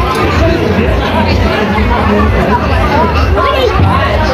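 Crowd chatter: many voices talking at once close by, loud and continuous.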